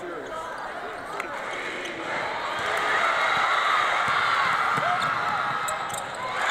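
Indoor basketball game: a crowd's voices filling a large arena, with a basketball bouncing on the court. The crowd grows louder about two seconds in.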